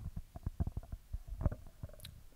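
Handling noise on a handheld microphone: a rapid, irregular run of soft low knocks and rubs.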